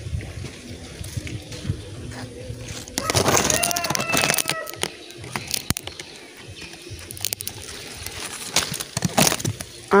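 Leaves and branches rustling, with a few sharp snaps, as a fruit is picked by hand from a Thai apple (Indian jujube) tree.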